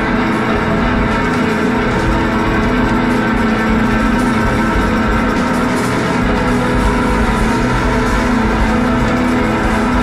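A live band of drums, bass and guitar playing a loud, dense passage of steady held notes that runs on without a break.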